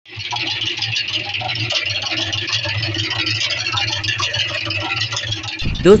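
Electric portable concrete mixer running with water in its drum: a steady low motor hum under a continuous hiss and churning from the turning drum.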